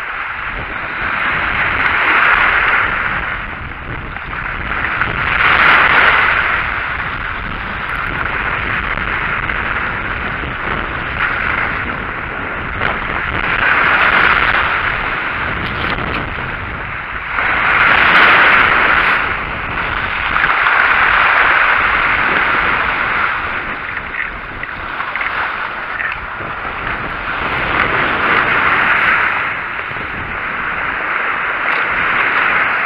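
Sea waves washing onto a stony beach, each surge swelling and falling away every few seconds, with wind rumbling on the microphone.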